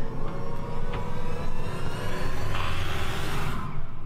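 A door creaking open with a low, drawn-out groan, likened to a little fart, over a steady low rumble. A hiss swells in the second half and cuts off suddenly just before the end.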